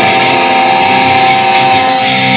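Live heavy metal band with distorted electric guitars holding one steady chord.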